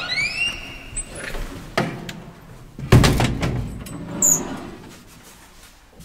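Hinged elevator landing door creaking open with a rising squeal at the start. A loud, heavy thud comes about three seconds in, and a short high squeak a second later.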